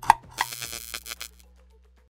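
Short electronic outro sting: a sharp tone hit, then a high shimmering swell that fades away by about a second and a half in.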